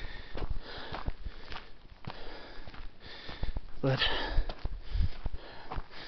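A hiker breathing as he walks, with irregular footsteps on a gravelly dirt road.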